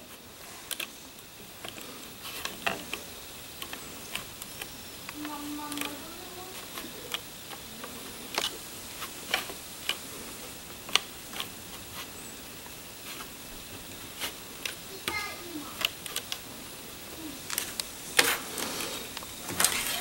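Scattered small clicks and taps of fingers pushing rubber bands down over the pegs of a plastic bracelet loom, irregular throughout.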